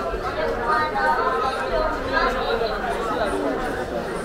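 Chatter of many people talking at once on a crowded street, several voices overlapping with none standing out.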